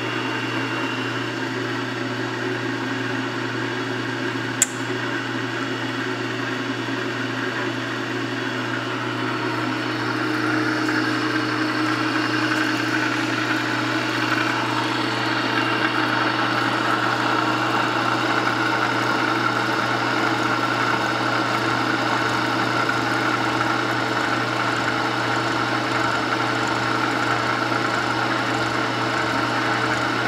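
Burke horizontal milling machine running with a steady motor hum, its side-milling cutter taking a light finishing skim cut on the bevel of hand-scraper blanks. A single sharp click comes about four and a half seconds in, and the sound grows a little louder and harsher from about ten seconds on as the cutter works the parts.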